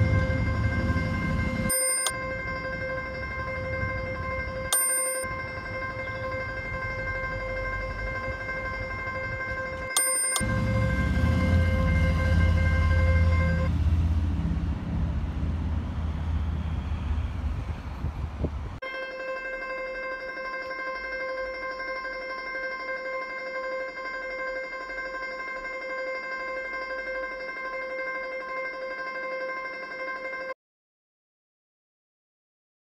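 A steady, unwavering high drone tone with overtones, held over a low city-street rumble. The tone breaks off about 14 seconds in and returns about five seconds later, while the rumble swells, then stops suddenly near the same moment, leaving the drone alone.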